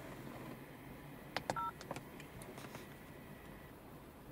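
Digital mirror dash cam giving a brief two-tone electronic beep with a click, about one and a half seconds in, as its button is pressed. The rest is quiet room tone with a faint steady high whine.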